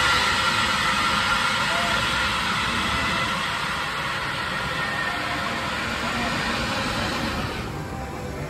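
Steel roller coaster train running along its track: a steady rushing roar with a faint whine in it, easing off gradually.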